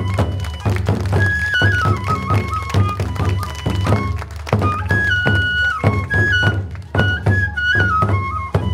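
Japanese kagura ensemble: two large barrel drums (taiko) struck in rapid stick strokes, with a transverse bamboo flute (fue) playing a high melody that steps between held notes. The drumming eases briefly twice, about halfway through and near the end.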